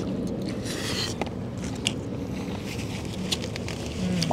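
Close-up chewing and eating sounds as a mouthful of food is bitten and chewed, with a few sharp light clicks over a steady low background hum.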